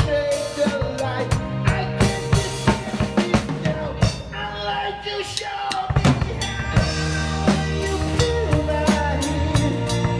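Drum kit played with sticks in a live rock band: snare, bass drum and crash cymbals over bass and other instruments. Around the middle the low end drops out briefly, and a big hit about six seconds in brings the full band back.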